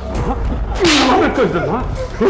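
A sharp whoosh sound effect about a second in, laid over a background score of a gliding melodic line and a low steady drone.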